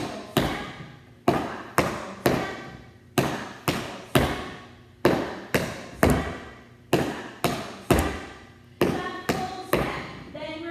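Metal taps on tap shoes striking a hard studio floor as a dancer repeats shuffle steps: groups of three crisp taps, brush-brush-step, about every two seconds. Each tap rings briefly in the large room.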